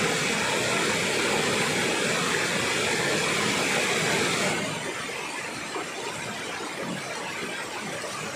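Waterfall cascade rushing in a steady wash of noise, a little quieter from about halfway through.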